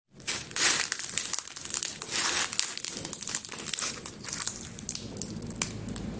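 Crisp pan-fried lahmacun being folded and torn by hand, the thin crust crackling and crunching in quick, irregular snaps that are busiest in the first half and thin out toward the end; the crackle is the sign of a crisp, well-fried crust.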